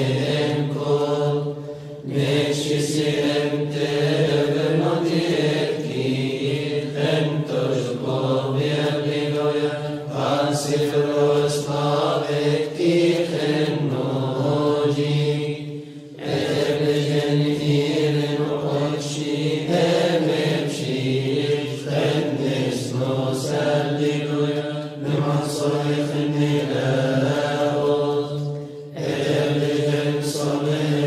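Coptic liturgical chant sung by monks: slow melodic lines over a steady low held note, with brief pauses about two, sixteen and twenty-nine seconds in.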